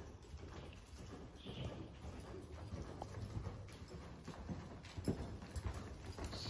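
A ridden horse's hooves striking the soft dirt footing of an indoor arena: a continuous run of dull thuds as it moves around the arena. The sharpest hoof strike comes near the end as it passes close by.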